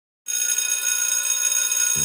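Bright, high-pitched ringing sound effect, like an electric bell, starting about a quarter second in after a moment of silence and ringing steadily to the end.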